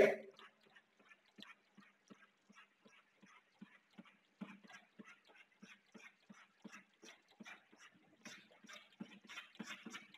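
Chalk on a chalkboard: a long run of short, quick strokes, a few a second, each a faint tap and scratch as the chalk hatches lines.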